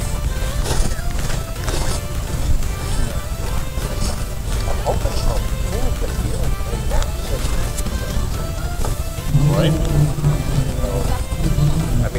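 Distant voices of people talking at an outdoor camp over a steady low rumble, with a nearer voice about nine seconds in.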